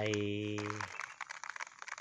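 A man's voice holding one long, level hesitation vowel for about a second, then faint light ticks as chili seeds trickle from a tin can onto plastic bubble wrap.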